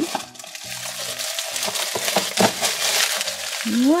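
Tissue paper rustling and crinkling as it is handled and pulled out of a plastic toy drawer, with soft background music underneath.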